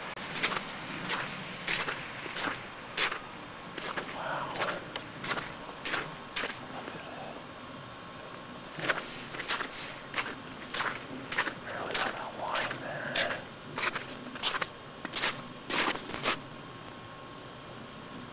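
Footsteps crunching through snow and sleet at a steady walking pace, with a short pause near the middle.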